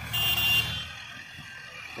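Sugarcane harvester and tractor engines running with a steady low rumble, and a single high electronic beep lasting under a second near the start.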